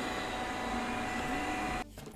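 eufy RoboVac 11S robot vacuum running in spot-cleaning mode at maximum suction: a steady whir with faint humming tones. It cuts off suddenly near the end.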